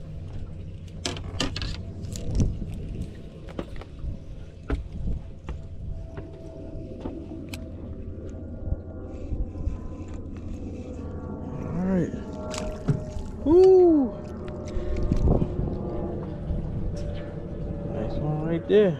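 Clicks and knocks of a spinning rod and reel being handled while a panfish is reeled in and swung aboard a boat, over a steady low hum. A man gives two drawn-out exclamations about two-thirds of the way through, the second the loudest sound.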